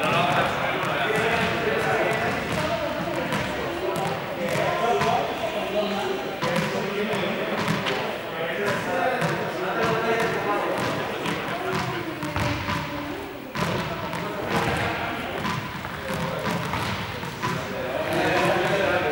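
Indistinct chatter of a group of people with repeated thuds and knocks of objects hitting a hard gym floor, scattered irregularly throughout.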